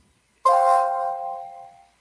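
Electronic notification chime from an online fantasy draft room: a single ding of a few pitches struck together about half a second in, ringing out over about a second and a half. It marks a new player being put up for bidding.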